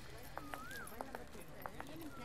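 Quiet outdoor ambience: short whistled calls that rise and fall in pitch, sharp clicks a few times a second, and faint voices in the background.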